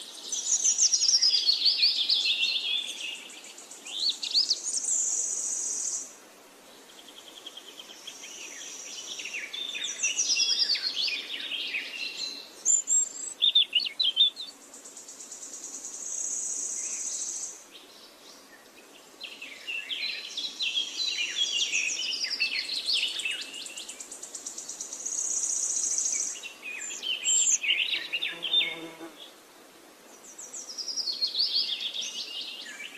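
Birds singing outdoors in busy runs of quick rising and falling chirps, pausing and starting again several times, with a high, steady buzz that comes and goes in spells of a second or two.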